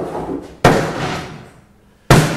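Sledgehammer smashing into an old upright piano: one heavy crash about half a second in that dies away over about a second, after the tail of an earlier blow.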